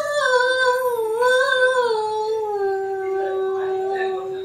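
A woman singing one long held vowel without words. The pitch wavers and slides gently down over the first two seconds, then holds steady on a lower note.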